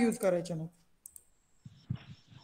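A voice ends a word, then two sharp clicks come about a second in, followed by faint low knocks near the end.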